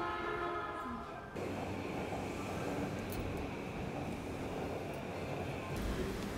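A train running: a steady rumble with a high ringing hiss, which starts abruptly about a second and a half in, after a brief few held tones.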